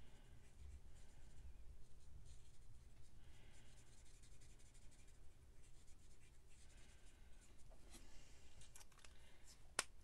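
Faint scratchy strokes of a felt-tip marker nib colouring on a stamped cardstock image, with a sharp click just before the end.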